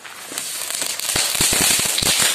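A ground fountain firework lit on a concrete ledge, hissing as it sprays sparks and building up in strength, with sharp crackling pops breaking through from about a second in.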